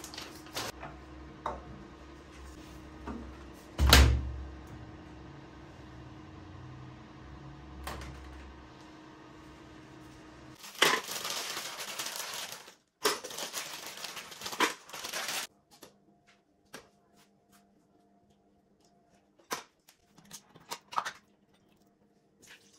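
Laundry being handled at a front-loading washing machine over a steady low hum, with a few clicks and one loud thump about four seconds in. After a cut, a plastic bag of frozen strawberries rustles loudly, then frozen fruit pieces click as they drop into a plastic blender jar.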